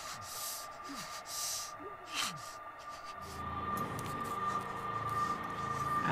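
Hushed suspense-film soundtrack: a steady high tone throughout, with a few soft breaths and sighs in the first seconds. A low droning chord comes in about three seconds in and slowly grows louder.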